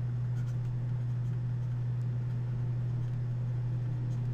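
A steady low hum, with faint scattered taps and scratches of a stylus writing on a tablet.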